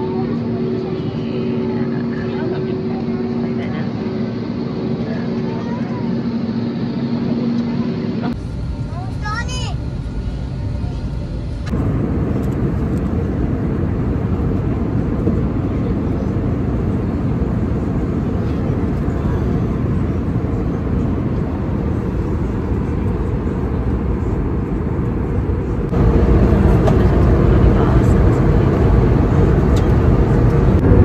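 Airliner cabin noise in flight: a steady rushing hum with a low drone under it over the first several seconds. It changes abruptly a few times and is louder over the last few seconds.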